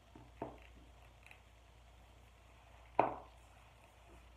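A quiet room with two short clicks: a soft one about half a second in and a sharper, louder one about three seconds in that fades briefly.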